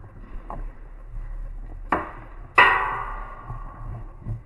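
Two sharp cracks in a paintball game, about two-thirds of a second apart. The second is the louder and leaves a metallic ring that fades over about a second.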